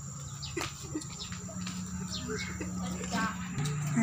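Background chatter of people's voices with a steady low hum underneath, and a few short clicks.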